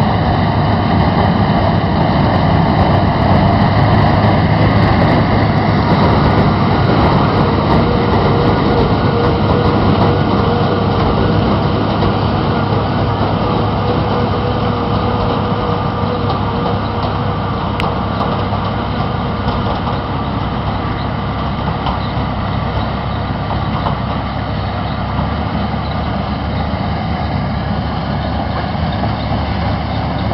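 Tractor engine and mounted corn picker running steadily while picking standing corn: a dense mechanical drone that eases a little in loudness after the first ten seconds or so.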